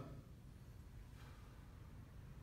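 Near silence, with one faint breath about a second in from a man doing a controlled leg-lowering exercise, breathing in time with the movement.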